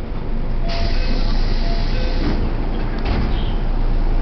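A train running with a steady low rumble. A burst of hissing with faint tones in it starts under a second in and lasts about a second and a half.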